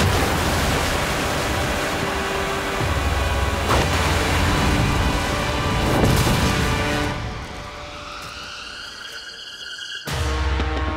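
Dramatic orchestral score under a loud rush of surging water, with heavy crashes about four and six seconds in as the boats are hurled; the rush dies away after about seven seconds, leaving the music with a rising sweep.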